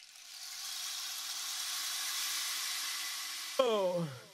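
A steady, even hiss of noise, an electronic noise effect in the track, fades in over the first second and holds. Near the end it cuts off into a shouted vocal "yeah" that falls in pitch.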